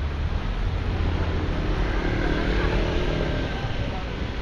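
A motor scooter passing on a wet street, its engine note swelling and fading over a low traffic rumble and the hiss of tyres on wet tarmac.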